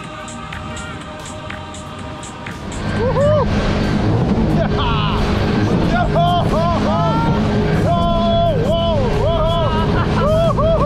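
Soft music, then from about three seconds in the loud, steady rush of a jet ski speeding over open water: engine, spray and wind on the microphone. Riders' voices call out over it.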